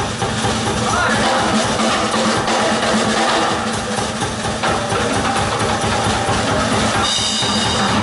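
A live progressive rock band playing an instrumental passage, with the drum kit to the fore.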